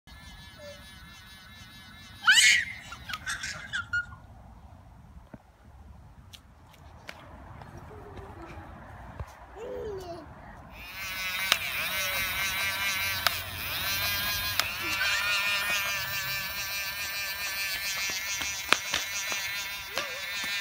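A young child's short, high squeal about two seconds in. From about eleven seconds a battery-powered bubble gun runs steadily, giving a shrill whir with many high tones.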